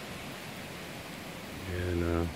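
Steady, even outdoor background hiss with no distinct events. Near the end a man's voice comes in with one held, drawn-out filler sound.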